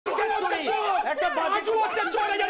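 Several men shouting over one another in Bengali in a heated TV studio debate, their raised voices overlapping without a break.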